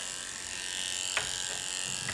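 Corded electric pet clipper running steadily while trimming a dog's chest fur, with a single click just over a second in.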